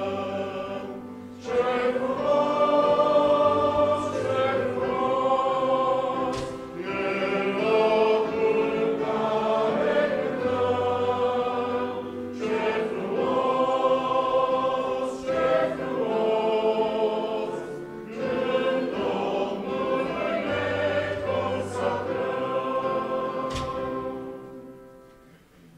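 Congregation singing a hymn together with piano accompaniment, in phrases of several seconds with short breaks for breath between them.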